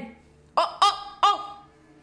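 A person laughing: three short chuckles, each rising and falling in pitch, about a third of a second apart.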